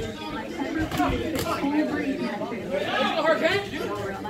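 Indistinct chatter of several overlapping voices, with a few short knocks about a second in.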